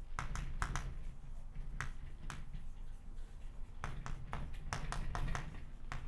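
Chalk writing on a blackboard: an irregular string of short, sharp clicks as the chalk strikes and strokes across the board.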